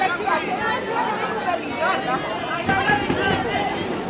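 Several spectators talking at once, an unbroken babble of overlapping voices with no single clear speaker.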